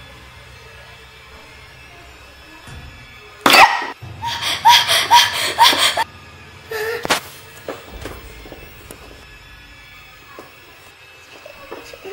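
Eerie background music with a low steady drone, broken about three and a half seconds in by a sudden loud burst and then a rapid string of short pitched cries for about two seconds, with one more burst near seven seconds.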